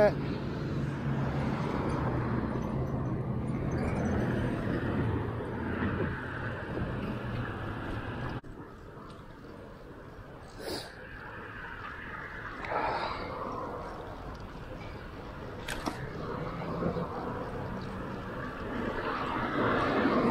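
Street traffic and road noise heard from a moving bicycle, a steady hum for the first eight seconds that drops suddenly to a quieter level.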